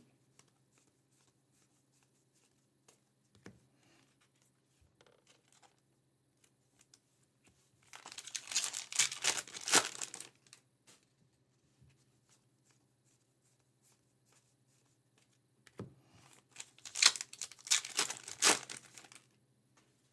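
Trading-card pack wrappers from 2024 Topps Heritage Baseball being torn open and crinkled by hand, in two bouts: one about eight seconds in and another from about sixteen seconds. Between the bouts there are only faint ticks of cards being handled.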